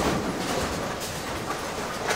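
Ten-pin bowling pinsetter machinery for several lanes running in the machine room: a steady mechanical rattle and clatter with a few light knocks.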